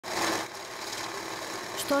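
Electric banknote counting machine running, paper notes riffling through it with a fast, even whir, loudest in the first half second.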